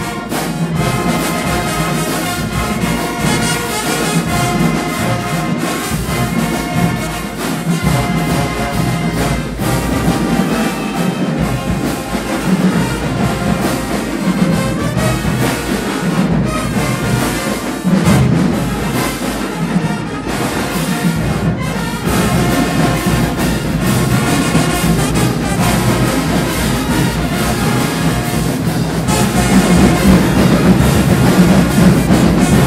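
High school marching band playing in a gym: trumpets, trombones, sousaphones and clarinets playing together in a full ensemble sound, getting louder near the end.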